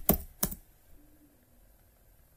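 Computer keyboard keystrokes: two or three sharp clicks in the first half second, then near silence.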